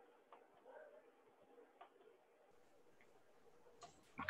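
Near silence on a video call, broken by a few faint clicks.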